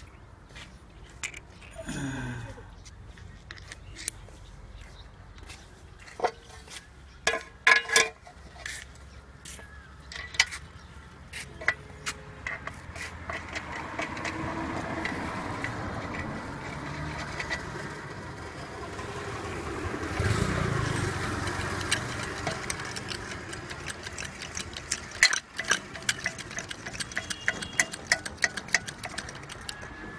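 Hand-lever hydraulic pump and hole punch being worked on a metal plate: scattered metal clicks and knocks, then a quick run of clicks near the end as the punch is pumped through the plate.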